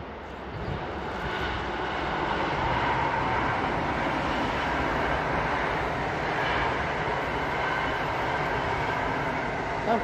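An electric locomotive hauling a passenger train past: a steady rumble of wheels on rail that builds over the first couple of seconds and then holds, with a faint whine above it.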